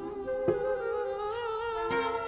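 Live contemporary chamber music for voice, flute and cello: several held tones waver slowly, broken twice by a short sharp attack, about half a second in and again near the end.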